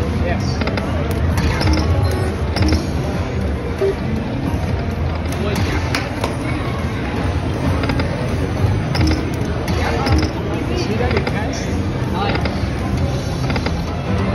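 Busy casino floor: steady background chatter and slot-machine music, with an Aristocrat Lightning Link slot's reel and spin sounds and short clicks as it is played.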